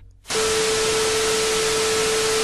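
Television static sound effect: a steady hiss of white noise with one steady mid-pitched tone under it, starting about a third of a second in after a brief gap.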